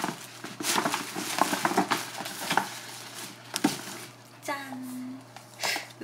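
Paper wrapping rustling and crinkling as a gift-wrapped parcel is torn open and a cardboard box is slid out, with irregular taps and scrapes. A short hummed voice sound comes about four and a half seconds in.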